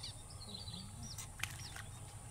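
Small birds chirping faintly, short high notes that sweep downward, with three or four short sharp noises about a second and a half in, over a steady low rumble.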